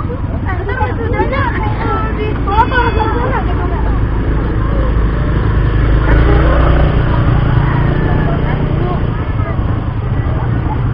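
Voices of people talking indistinctly, clearest in the first few seconds, over a steady low rumble that grows louder midway.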